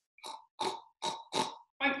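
A woman imitating a pig: four quick, breathy snorts, then the start of a voiced "oink" near the end.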